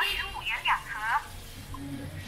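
Street background on a wet, rain-soaked road, with a brief high voice in the first second and a faint low hum coming in near the end.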